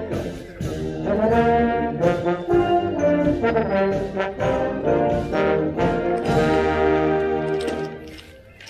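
Marching band brass playing a tune in full: trombones, sousaphones, trumpets and mellophones together in changing chords. The music stops right at the end.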